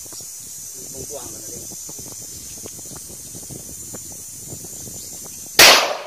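A single handgun shot about five and a half seconds in, the last round of her string: one sharp, loud report with a brief echo after it.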